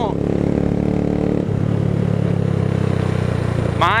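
Single-cylinder 150 cc motorcycle engine running under way, with wind and road noise. About a second and a half in, the engine note drops to a lower, fuller pitch.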